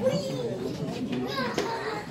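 Indistinct voices of children talking and calling out, a high voice loudest just after the start.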